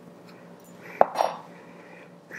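Steel surgical instruments clinking: one sharp metallic click about halfway through, followed by a brief clink, as a clamp is handled and laid down.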